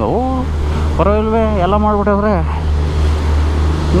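A man's voice in drawn-out phrases, over a steady low rumble underneath.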